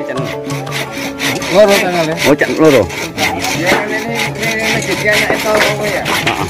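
Handsaw cutting a wooden beam by hand: rasping strokes of the blade through the timber, repeating in a quick, regular rhythm.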